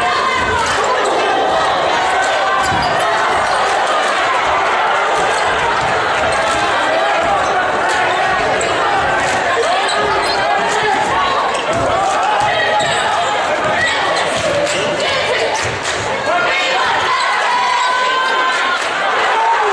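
Basketball bouncing on a hardwood gym floor during live play, a run of short sharp strikes, over steady crowd chatter from the bleachers.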